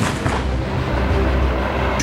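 Low rolling rumble from a T-72 tank's 125 mm main gun shot, echoing over open hills and slowly dying away.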